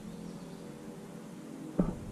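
Faint, even outdoor background noise in woodland, with no distinct event; a voice starts just before the end.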